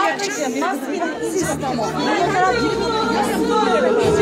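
Many people talking at once in a crowded room: overlapping chatter of voices.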